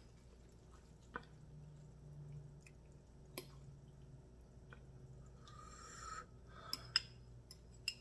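Faint sounds of someone eating spicy instant noodles: quiet chewing and wet slurping, with a few light clicks of a fork against a glass bowl and a short breathy sound about six seconds in.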